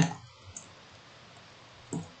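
A few faint computer keyboard clicks as a dimension value is typed in, over low background hiss.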